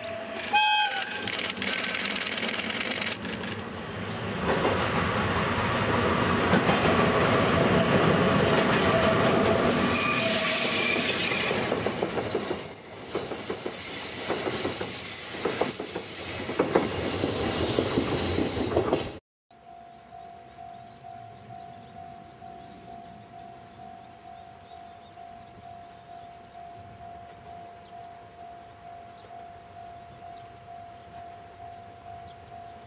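EF58 electric locomotive hauling a rail-carrying work train: a short horn blast right at the start, then loud rumbling and clattering of wheels on the rails as it passes close through the tunnel, with a high wheel squeal on the curve in the middle. The sound cuts off suddenly about two-thirds through, leaving a much quieter steady tone that pulses about once a second.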